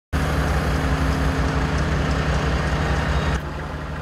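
Engine running steadily with a low hum, which drops to a quieter engine hum about three and a half seconds in.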